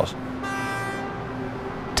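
A horn blowing one steady, held note that starts about half a second in.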